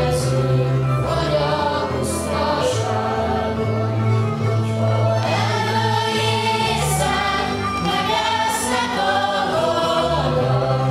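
Folk dance music: a group of voices singing a song over instrumental accompaniment with a steady bass line.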